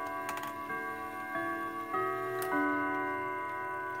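Howard Miller wall clock's chime rods ringing its hour chime, a sequence of notes at different pitches that overlap and hang on, with a few light clicks. The chime is sounding almost on the dot of the hour now that the minute hand has been reset.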